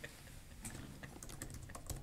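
Typing on a computer keyboard: a quick run of faint key clicks, thickest in the second half.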